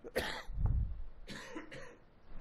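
A person coughing: a sharp burst just after the start, then a second, shorter noisy burst about a second later.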